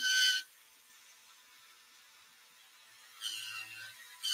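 Mostly near silence. About three seconds in, a handheld rotary tool grinding a plastic figure's leg comes in as a short high whine with hiss over a faint motor hum, and breaks off just before the end.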